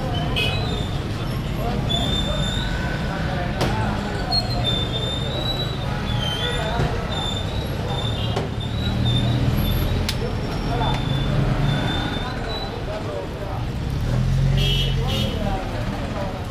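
Busy street ambience: motor traffic running with a steady low rumble, short horn toots, and background voices.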